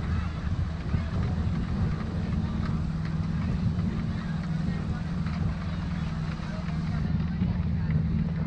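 Wind buffeting the camera's microphone as a steady low rumble, with a faint low hum under it and the chatter of people walking by.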